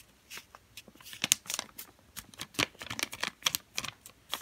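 A square sheet of origami paper being folded corner to corner into a triangle and lined up in the hands, crinkling and crackling in a quick, irregular run of short sharp sounds.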